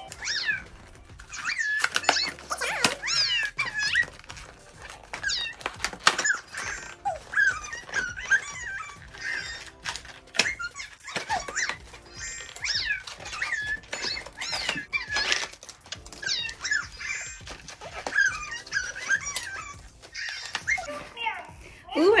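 Electronic meows and chirps from a FurReal Walkalots toy cat, repeated many times over background music, with a few clicks from the cardboard packaging being handled.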